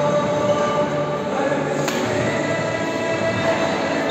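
Steady, echoing din of a crowded indoor badminton hall, with one sharp racket hit on the shuttlecock about two seconds in.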